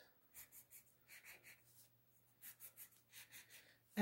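Faint scratching of a colored pencil on paper: a series of short drawing strokes.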